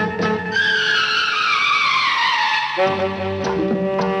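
Hindi film song music with a sound effect that glides steadily down in pitch for about two seconds, starting about half a second in; the instruments come back in with held chords near three seconds in.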